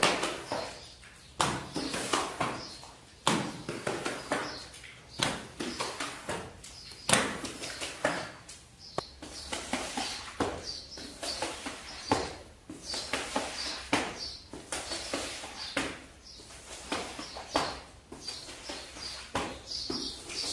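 Rubber floor squeegee pushing water across wet ceramic floor tiles, stroke after stroke, with a sharp knock about every second or so as the blade is set down or strikes the tile, and a wet swishing between the knocks. Birds chirp in the background.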